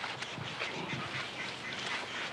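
Ducks quacking in short, scattered calls.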